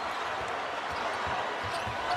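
Basketball bouncing on a hardwood court, a handful of irregular low thuds, over the steady noise of an arena crowd.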